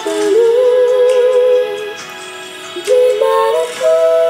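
Two female voices singing a slow duet in close harmony, holding long notes. They drop away about two seconds in and come back shortly before the end.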